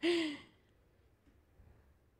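A person's short breathy exhale with a slight falling voice, like a sigh, then faint room tone.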